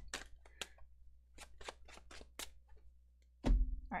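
Tarot cards being shuffled and handled: a quick series of sharp card snaps and taps, about nine in the first two and a half seconds. A woman's voice comes in near the end.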